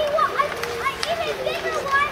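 Children's voices shouting and calling out during a youth ice hockey game, with a sharp clack about a second in.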